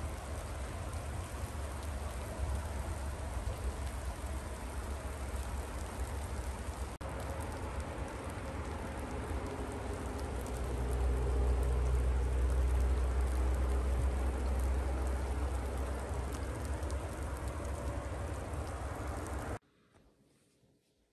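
Wet snow falling with a steady patter like light rain, over a low rumble that swells for a few seconds around the middle. The sound cuts off suddenly just before the end.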